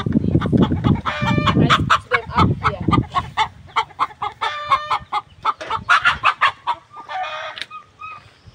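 Domestic chickens clucking in short repeated calls, with longer drawn-out calls about a second in, around five seconds in, and again near the end.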